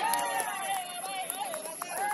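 Football players shouting and calling to each other during play, with a few sharp knocks and a steady high-pitched whine underneath.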